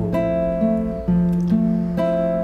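Nylon-string acoustic guitar strumming chords that ring out, with a new chord struck about a second in.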